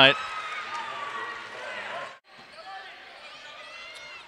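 Basketball game sound on a hardwood court: a ball dribbling, with faint squeaks and calls over the arena's background noise. About halfway through, the sound drops out abruptly for an instant, then resumes quieter.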